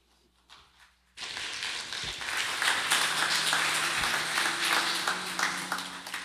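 Congregation applauding, starting suddenly about a second in and lasting about five seconds before fading.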